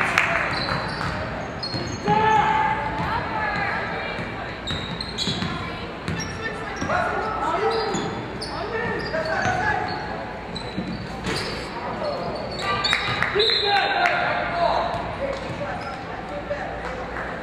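Basketball being dribbled on a hardwood gym floor during live play, with players and spectators calling out.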